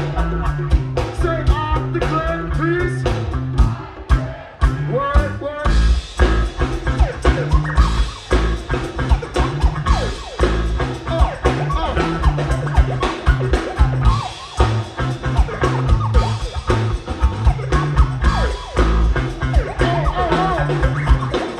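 Live band music with a steady beat: bass guitar, drum kit and conga drums. The band drops back briefly about four seconds in, then comes back in full around six seconds.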